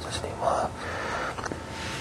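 A man whispering a prayer under his breath, breathy and without full voice.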